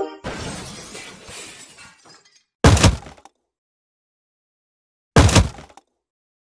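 Two hard-hit impact sound effects about two and a half seconds apart, each a sudden loud strike with a short crunching, breaking decay.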